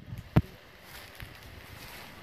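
Outdoor background noise with wind buffeting the microphone, and one sharp knock a fraction of a second in.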